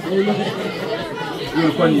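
Several men's voices in overlapping conversation and chatter around a meal table.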